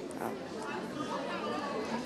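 Faint background chatter of distant voices over a steady low hiss.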